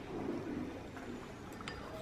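Faint handling sounds as a metal spatula adds copper oxide powder to a glass beaker of hot acid, with a few light clinks of the spatula against the glass near the end.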